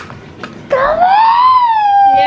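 A young child's high, drawn-out vocal call, starting just under a second in, rising in pitch and then easing slightly down as it holds for about a second and a half.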